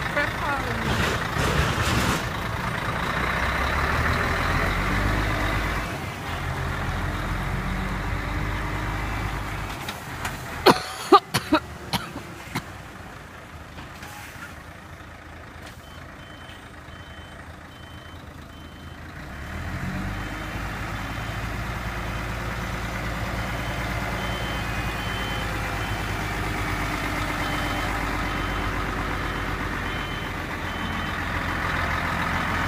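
Heavy truck's diesel engine running at low revs. A few sharp knocks come about eleven seconds in, then the engine quiets for a while. From about sixteen seconds a faint, evenly repeated reversing beep sounds, and the engine builds up again near twenty seconds.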